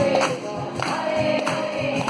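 Live devotional kirtan music: a sung chant with sustained, gliding vocal lines over strummed acoustic guitar and steady hand-drum strokes. It sounds like several voices singing together.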